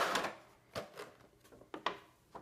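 Clear plastic blister insert of a Pokémon TCG box crackling and clicking as a card is pried out of its slot by hand: a loud crinkle at the start, then a few sharp clicks.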